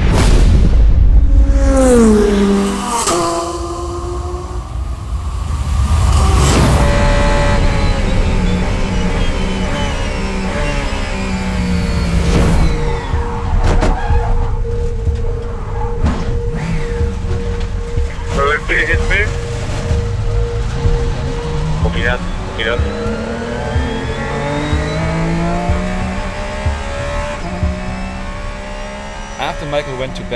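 Race car engine heard from on board at night, its pitch climbing again and again as it pulls through the gears, with falling pitch near the start as it slows.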